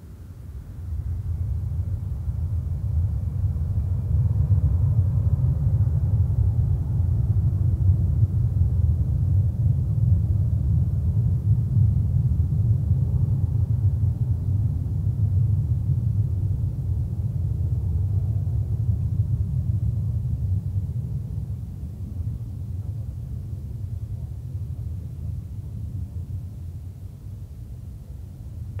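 Jet engines of a Boeing 777-200ER taxiing past, a deep steady rumble that swells about a second in and eases off over the last several seconds, with a faint high whine early on.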